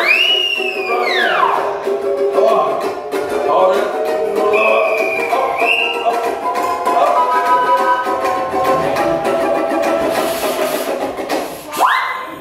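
Instrumental break of a ragtime-blues tune on strummed ukulele, with a slide whistle swooping: a big glide up and back down at the start, a wavering held whistle note mid-way, and a quick upward swoop at the end.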